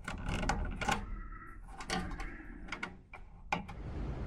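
Wire spade connector being pulled off and pushed onto a furnace control board's blower speed taps, giving a run of small irregular clicks and scrapes over a low steady hum. The blower is being moved one speed lower to cut airflow.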